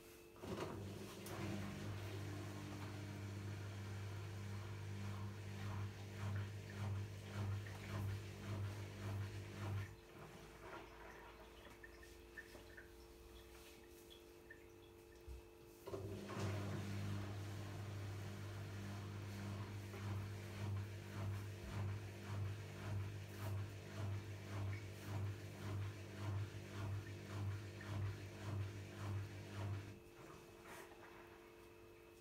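Zanussi ZWF844B3PW front-loading washing machine taking in water at the start of its synthetic 60 cycle: a steady hum with a regular pulse about once a second. The fill stops after about ten seconds and starts again about six seconds later.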